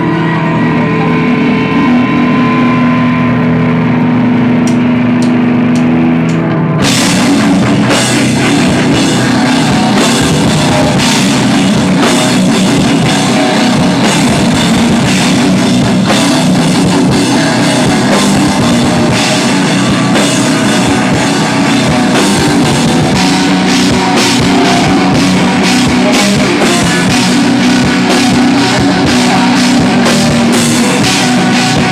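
A live heavy metal band starting a song. For the first seven seconds or so it plays held notes. Then the drum kit and the full band come in and keep playing loud.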